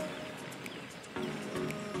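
Quiet background music with steady held tones, stepping up slightly a little over a second in.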